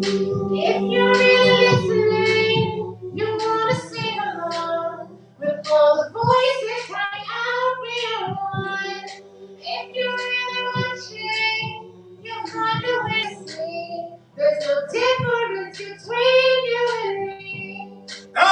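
A woman singing a slow solo melody into a microphone, her notes long and bending in pitch, over steady low held notes in the first third and again near the end.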